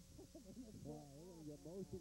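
A man's voice, quiet and indistinct, its pitch rising and falling; no clear words.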